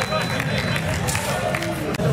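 Fencers' quick footfalls and scattered clicks on the fencing strip, over a murmur of voices in a large hall.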